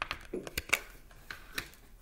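Tarot cards being handled and laid down on a wooden table: a series of light, irregular clicks and taps.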